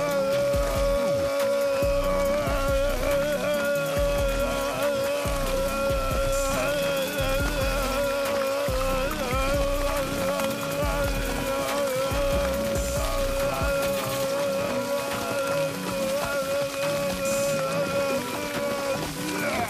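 Cartoon dog vomiting a long, unbroken stream onto the floor: one drawn-out retching voice held at a nearly steady pitch, over wet splashing.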